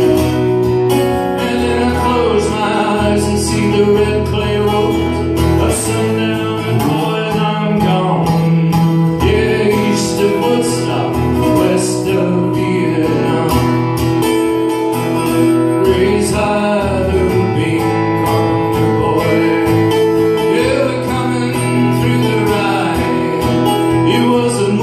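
Solo acoustic guitar, a sunburst flat-top, strummed and picked steadily through an instrumental passage of a folk-country song.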